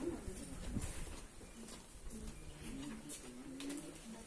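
A bird cooing softly, several short low calls in a row, over a faint low rumble.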